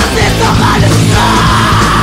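Hardcore punk song playing loud: distorted guitars, bass and pounding drums with shouted vocals. A long held high note comes in a little past halfway and sags slightly in pitch.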